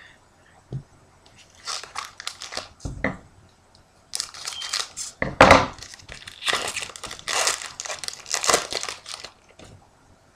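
A foil trading-card pack wrapper being torn open and crinkled by hand, in irregular crackling bursts that start about two seconds in and are loudest in the second half.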